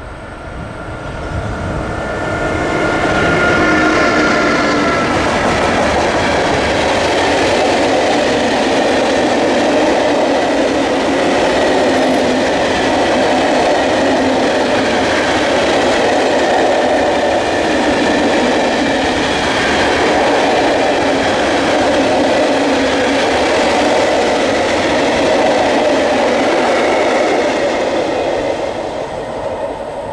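A freight train hauled by an electric locomotive passing close by. In the first few seconds the locomotive approaches with a few whining tones. Then comes the loud, steady rolling noise of a long string of hopper wagons, which fades near the end.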